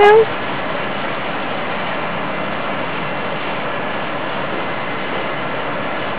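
Steady, even rushing background noise with no distinct events, after a short spoken word at the very start.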